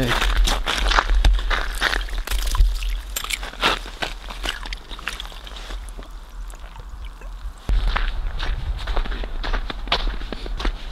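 Footsteps crunching on snow-covered pond ice, with a little sloshing of water at an ice-fishing hole as a bass is let back in. A low wind rumble on the microphone runs underneath and grows louder about two seconds before the end.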